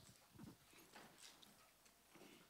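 Near silence: room tone with a few faint, scattered knocks and shuffles.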